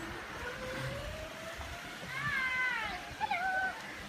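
A child's high-pitched cries, heard at a distance: a couple of short sliding calls in the second half, after a thin tone that rises slowly through the first second and a half.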